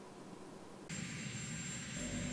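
Faint, steady helicopter turbine noise with a thin high whine, starting about a second in, from a parked helicopter's engines still running.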